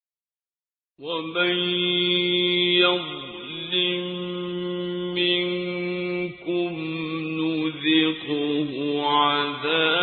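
A man's voice chanting Quranic verses in Arabic in melodic recitation style (tajwid), with long held notes and ornamented turns. It starts about a second in after silence.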